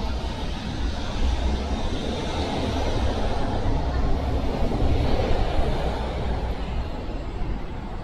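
City street traffic with a steady low rumble, swelling louder about halfway through as vehicles pass, then easing off.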